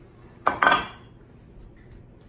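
A baking dish set down on a granite countertop: a short clatter of two knocks about half a second in.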